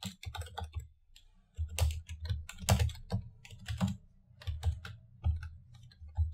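Computer keyboard typing: irregular keystrokes, a quick run in the first second, then slower, spaced strokes.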